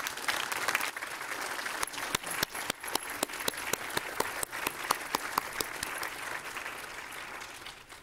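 Applause from a chamber full of people, many hands clapping at once, tapering off near the end.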